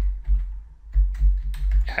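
Typing on a computer keyboard: a short run of separate key presses.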